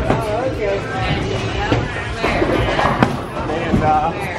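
Busy bowling alley din: people talking over background music, with several sharp clatters of balls and pins about a second apart.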